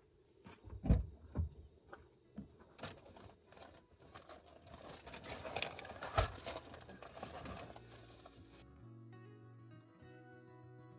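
Close handling noises of someone preparing food: a few sharp knocks and thumps, then several seconds of dense rustling. Background music comes in near the end.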